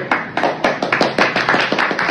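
Hands clapping in a quick steady run, about six claps a second.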